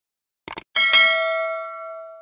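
A quick double mouse click from a sound effect, then a single bell ding that rings out and fades over about a second and a half: the notification-bell sound of a subscribe-button animation.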